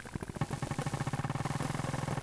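Experimental electronic music: a fast, buzzing, engine-like pulse over a low steady hum, swelling over the first second and then holding.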